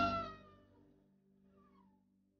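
A high animal call with a slight fall in pitch, loudest at the start and fading away within about a second. A fainter, shorter falling call follows near the end, over a faint low music drone.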